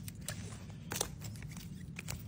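Hard plastic graded-card slabs clicking against each other as they are handled, a few sharp clicks over a low steady room hum.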